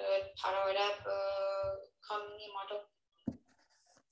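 A person's voice over a video call, drawing out long held vowels rather than clear words, stopping a little before three seconds in, followed by a single click.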